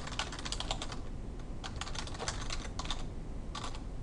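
Typing on a computer keyboard: quick runs of keystroke clicks, with a short pause shortly before the end.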